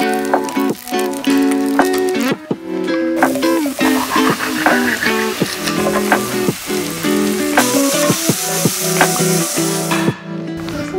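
Background music over vegetables sizzling as they fry in oil in a pan. The sizzle gets louder in the last couple of seconds.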